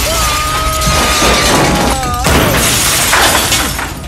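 A window's glass shatters as a body crashes through it. A loud burst of breaking glass starts suddenly, then surges again about two seconds in. A long held tone runs over the first half.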